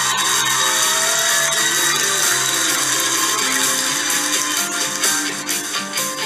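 Television talent-show music with sustained held notes, under a dense, steady wash of noise.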